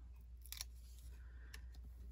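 Faint handling of a small die-cut cardstock heart with foam adhesive dots on its back, with one brief tick about half a second in, over a low steady hum.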